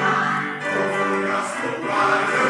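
Mixed choir of men's and women's voices singing held chords.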